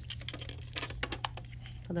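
A quick run of light plastic clicks and taps: long nails and fingers handling a clear plastic rhinestone organizer box.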